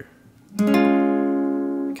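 Steel-string acoustic guitar: one major chord in the simplified A-shape fingering, strummed once about half a second in and left to ring, fading slowly.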